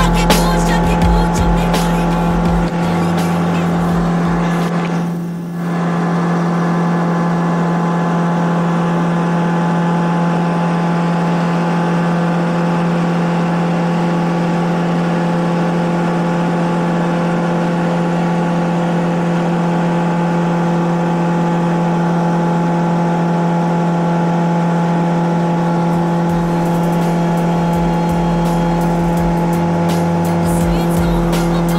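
Steady drone of a Cessna's piston engine and propeller heard inside the cabin in cruise flight: an even hum with a constant pitch, dipping briefly about five seconds in.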